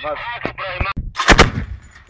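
Tripod-mounted heavy machine gun firing a short, loud burst about a second and a half in, just after a man's shout.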